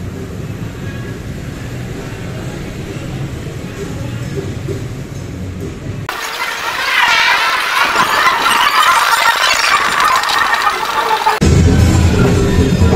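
Street traffic ambience: a steady low rumble of motorbikes and cars. About six seconds in it cuts abruptly to thin, bright-sounding music with no bass. Near the end a louder, fuller music track with drums comes in.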